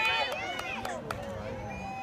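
Several voices calling out over the field, high and fading over the first second, with a few faint clicks near the middle.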